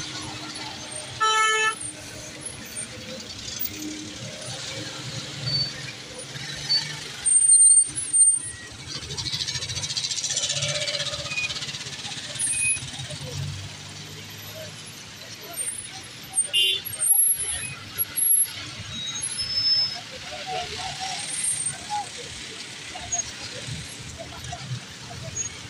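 Slow, jammed road traffic on a flooded street: vehicle and motorcycle engines running in a steady low rumble, with a short horn toot about a second in and a few brief louder bumps.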